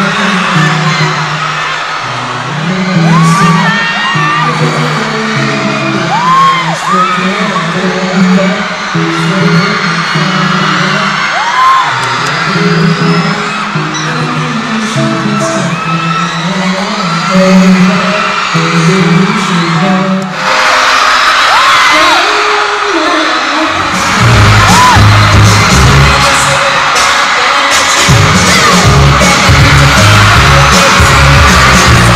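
A live pop song over a PA: a male singer on a handheld microphone with a backing track, and a large crowd whooping and screaming. About twenty seconds in the song breaks off, and a few seconds later a new track with a heavy bass beat starts.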